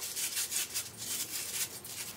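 Lemon half being twisted and pressed on a hand citrus reamer: a quick run of rasping rubs as the fruit grinds against the ridged cone, weakening near the end.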